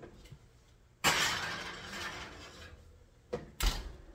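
A glass baking dish being slid onto an oven rack: a scraping rush starts suddenly about a second in and fades away. Near the end the oven door shuts with a thump.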